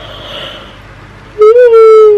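A woman yawning: a soft breathy intake, then, about a second and a half in, a loud drawn-out voiced yawn that slides slowly down in pitch.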